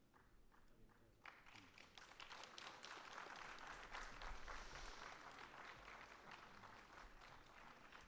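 Faint audience applause, starting about a second in, swelling and then tapering off toward the end.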